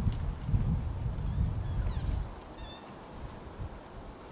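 Low rumbling noise outdoors for the first two seconds or so. Then, about two and a half seconds in, a short high-pitched animal call.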